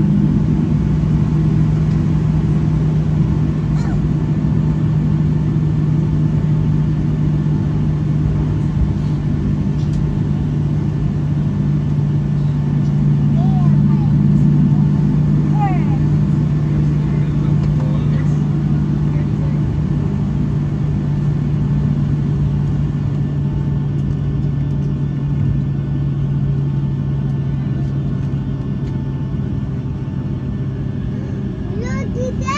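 Steady low drone of a Boeing 757-200's jet engines at idle as it taxis in, heard inside the cabin, growing a little quieter near the end, with passengers murmuring.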